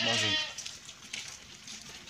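A sheep bleating once: a short, quavering call right at the start.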